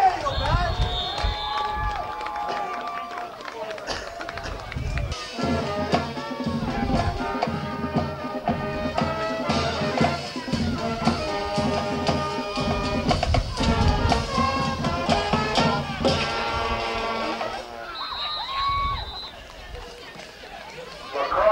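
Band music with drums and held notes, starting about five seconds in and stopping shortly before the end, over crowd noise. A shrill whistle blast sounds about a second in and again near the end.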